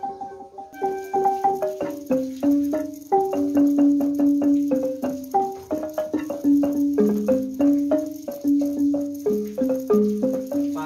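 A wooden-barred xylophone played with two mallets: a quick melody of struck notes starting about a second in, many of them repeated several times in fast succession.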